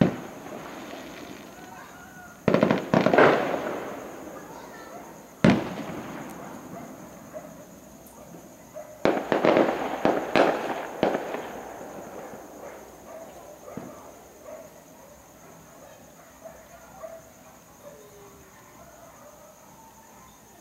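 Aerial fireworks bursting: a cluster of bangs about two and a half seconds in, a single sharp bang around five and a half seconds, and another cluster from about nine to eleven seconds, each trailing off in echo. After that only a few faint scattered pops.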